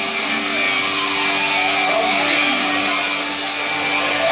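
Heavy metal band playing live: loud, distorted guitars with long held notes over a dense wash of stage sound.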